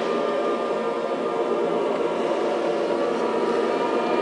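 Mixed choir singing, holding long sustained chords with several voice parts at once.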